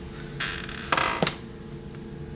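Paperback books being handled and set aside: a brief rustle and two soft knocks about a second in.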